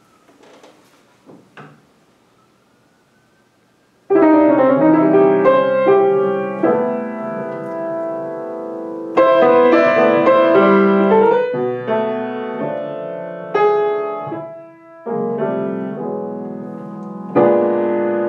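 Solo grand piano playing jazz out of tempo: after a few quiet seconds with faint knocks, full chords ring out about four seconds in and are struck again every few seconds, with melody and inner lines moving between them.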